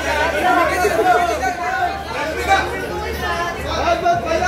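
Chatter of several people talking over one another in a large hall, over a low steady hum.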